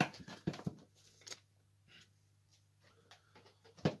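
Hands handling the plastic lid of a Tefal multicooker: a few light knocks and clicks in the first second and a half, then one more click near the end.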